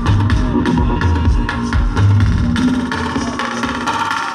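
Electronic dance music from a live DJ set, played loud: heavy bass beats with percussion over them, until about two and a half seconds in the bass drops away and the higher percussion and synths carry on alone.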